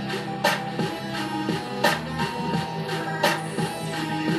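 A DJ mix of beat-driven electronic music playing, with a sustained bass line and a strong hit about every one and a half seconds, lighter beats between.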